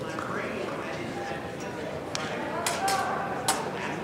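Background chatter of voices in a large hall, with a few sharp clicks in the second half.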